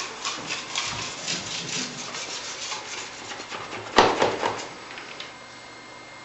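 Steel knife rubbed over Venetian plaster in quick repeated strokes, burnishing the surface to a gloss. A sudden knock about four seconds in, after which the strokes die away.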